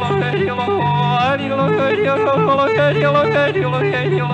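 A male country singer yodeling, his voice flipping rapidly back and forth between a low chest note and a high falsetto note, with an upward slide about a second in. Acoustic guitar accompanies him.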